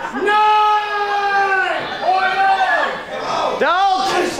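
A man's voice shouting long, drawn-out calls over a crowd in a hall, in time with a wrestling referee's count-out: one long held call, a shorter one, then a rising one near the end.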